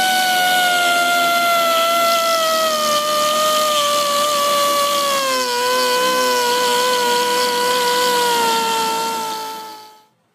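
A high-speed rotary grinder with a small grinding stone grinds out the hole of a steel gate-latch keeper plate to fine-tune the latch's fit. It gives a loud, steady whine whose pitch sinks slowly, dips a little just past halfway, then winds down and stops near the end.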